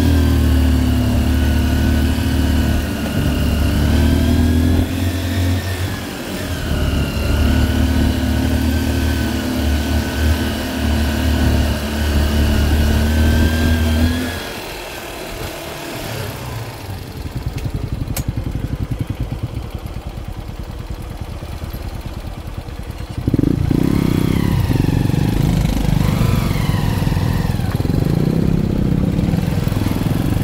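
Motorcycle engine pulling along a rough dirt track, its pitch rising and falling with the throttle. About halfway through it eases off to a quieter, even putter for several seconds, then picks up again with short revs.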